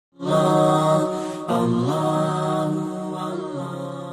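Intro jingle of held, chant-like vocal music in two long phrases, the second starting about a second and a half in and fading away at the end.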